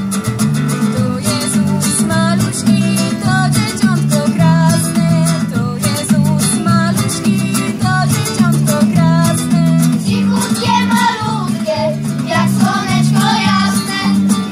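Youth choir of children and teenagers singing a song in unison with guitar accompaniment, recorded on a phone's microphone.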